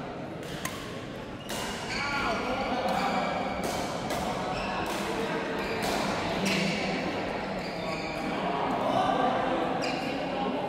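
Badminton doubles rally: about half a dozen sharp smacks of rackets hitting the shuttlecock at irregular intervals, with short squeaks of shoes on the court mat, echoing in a large hall.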